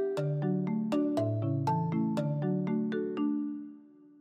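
A short musical jingle of chiming struck notes, about four a second over held lower notes, fading out near the end.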